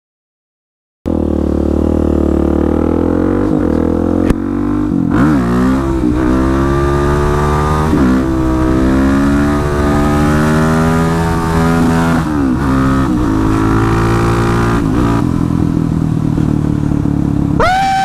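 Motorcycle engine running under way, its pitch climbing and then dropping back at each gear change, several times over. It starts suddenly about a second in.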